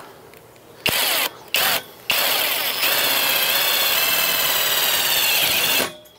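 Cordless drill working on a metal trellis pipe: two short bursts, then one steady run of about four seconds that steps up slightly in pitch soon after it starts.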